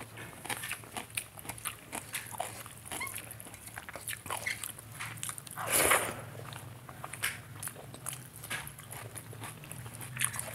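Close-miked eating sounds: wet chewing, smacks and mouth clicks of someone eating soft rice and ridge gourd curry by hand, with the squish of fingers mixing rice in a steel plate. A louder mouthful comes about six seconds in as a handful goes into the mouth.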